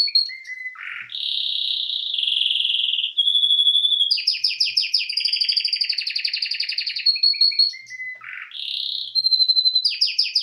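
Canary singing a continuous song of fast trills and buzzy rolls, with a few held whistled notes and two lower, falling notes about one second and eight seconds in.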